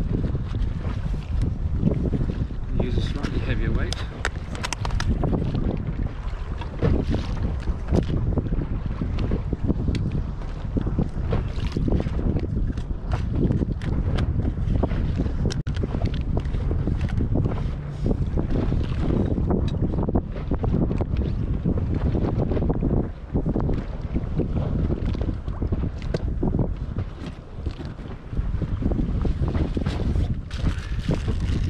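Wind blowing hard across the microphone, a continuous low buffeting with many short gusts. Under it is choppy sea water around a small inflatable boat.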